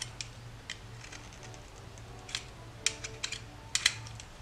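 A Stanley knife blade shaving slivers off a green rowan twig to shape a pen nib. It makes a string of short, crisp cutting clicks and scrapes at irregular intervals, over a low steady hum.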